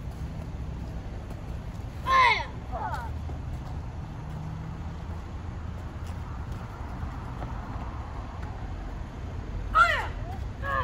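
Sharp karate kiai shouts: one loud, falling yell about two seconds in, a shorter one right after it, and another at the very end, over a steady low rumble.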